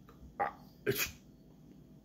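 Two short, sharp breathy bursts from a man's nose and mouth, about half a second apart, the second reaching higher in pitch.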